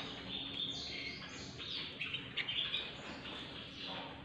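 Many caged canaries chirping and singing at once, short high chirps and trills overlapping throughout.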